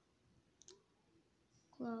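Two light clicks close together, about half a second in, from small plastic doll accessories being handled and fitted onto the doll.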